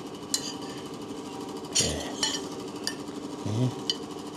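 A spoon clinking against a plate four times while rice is served out, over a steady hum.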